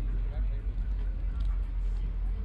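Background voices of people talking, over a steady low rumble.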